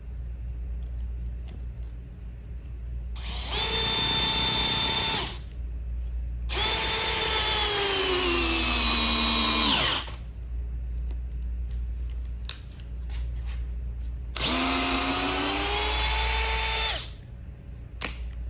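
DeWalt DCD777 brushless cordless drill in its low speed setting driving a structural screw into wood, in three runs: a short one about three seconds in, a longer one from about six and a half seconds in whose whine falls in pitch as the motor slows under load, and a third near the end.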